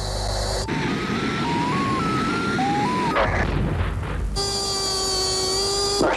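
Electronic tones over hiss, typical of cockpit audio on an aircraft's targeting-pod video: a run of short beeps stepping up and down in pitch, then one steady held tone from about four and a half seconds.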